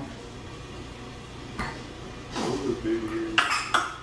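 A short vocal sound, falling in pitch and then held for about a second, followed near the end by two brief, sharp clinking noises.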